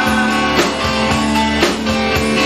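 Live rock band playing: electric guitar notes held over a drum kit, with drum strikes about once a second, picked up by a VHS camcorder's microphone.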